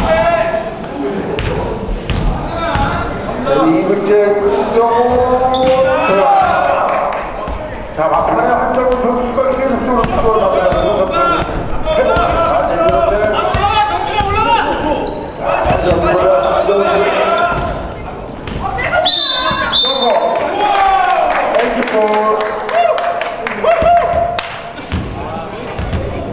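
Basketball bouncing and being dribbled on a hardwood gym floor, under near-constant shouting and talking voices from players and spectators.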